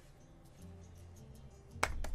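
Faint music with low sustained notes, then a single sharp hand clap near the end.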